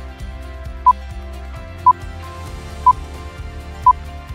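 Electronic countdown timer beeping once a second: four short, identical mid-pitched beeps marking the last seconds of an exercise interval, over soft background music.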